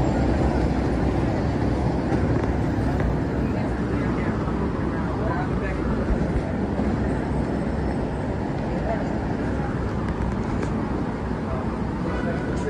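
Busy city street ambience: a steady hum of traffic with indistinct chatter from passing pedestrians.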